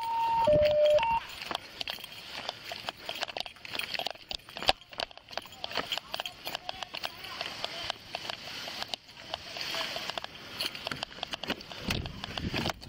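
A police radio's two-tone alert beeps high and low for about a second, then an officer's quick footsteps on grass and pavement with duty gear jostling and rubbing against the body-worn camera.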